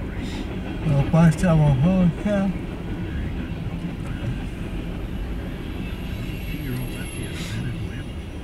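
Freight train cars rolling past, a steady low rumble heard from inside a vehicle's cabin. A voice speaks briefly about a second in.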